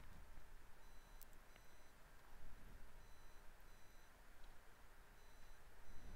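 Near silence: faint room hiss with short, faint high-pitched electronic beeps coming and going about once a second, and a faint click about a second in.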